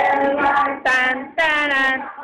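Young voices singing loudly, with two held notes in the second half, each rising into the note, broken by a short gap.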